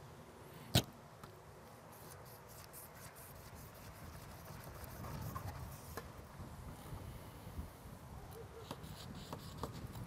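A fillet knife sawing through a shark's tough skin and cartilage to cut steaks, faint scraping with small scattered ticks. One sharp knock about a second in is the loudest sound.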